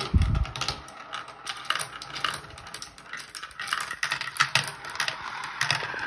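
Glass marbles rolling and clattering through a plastic marble-run track, a quick, irregular stream of small clicks as they hit the walls, pegs and each other. A brief low thump right at the start.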